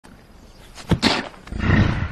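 A sharp click just before a second in, then loud animal calls in two bursts, the second one longer and lower.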